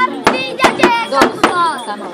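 Drum beaten in a quick, even rhythm of about four strikes a second, playing for the New Year bear dance; the strikes grow fainter and stop near the end.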